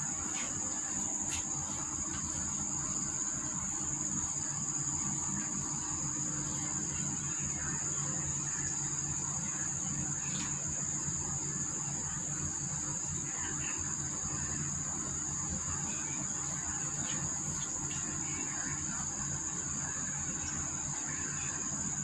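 Insects droning steadily on one high pitch, without a break, over a low steady hum.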